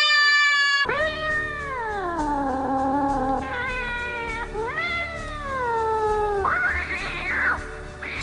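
Long drawn-out meow-like wails: a high held cry at the start, then three long calls that each rise and slide slowly down in pitch, and a short breathy sound near the end, over steady background music.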